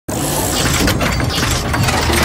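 Sound effects for an animated logo intro: a loud, dense rushing noise with a low rumble underneath, starting abruptly, with several surges about half a second to a second and three-quarters in.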